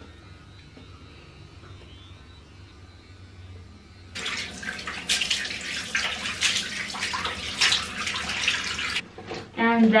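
A bathroom tap runs into a sink with water splashing as cleansing foam is rinsed off a face. It starts about four seconds in and stops about a second before the end.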